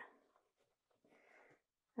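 Near silence, with a faint, brief rustle about halfway through as hands handle the knit fabric.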